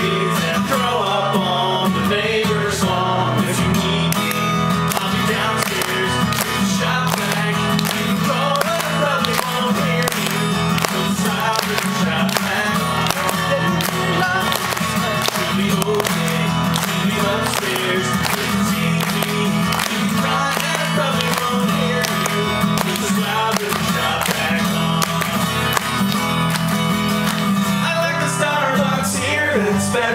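Live acoustic guitar, strummed steadily, with a man singing into a microphone, heard through a venue's PA.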